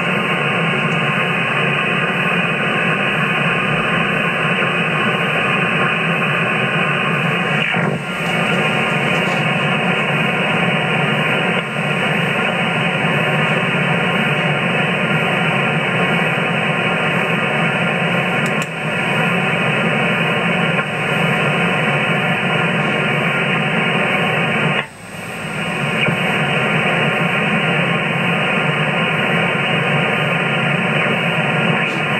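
Steady static hiss from a radio transceiver's receiver on the 11-metre band in upper sideband, with the sound cut off above about 3 kHz by the narrow filter. It drops out briefly a few times, most deeply about 25 seconds in.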